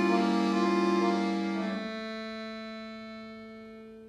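Bayan (chromatic button accordion) playing loud, full sustained chords. About two seconds in it drops to a softer held sound that fades away slowly.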